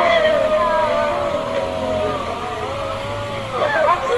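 A high-pitched voice holding long, wavering notes that glide up and down, with no clear words. Near the end it breaks into shorter rising and falling calls.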